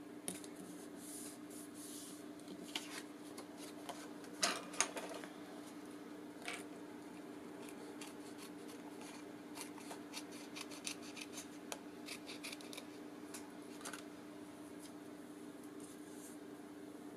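Paper being handled and pressed down on a table: soft rustles and light taps, the two sharpest close together about four and a half seconds in and a run of small ticks later. A faint steady hum runs underneath.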